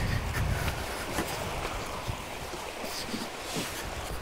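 Wind buffeting the microphone, with a low rumble that eases after the first second, and a few faint knocks from someone climbing up the back of a van onto its roof.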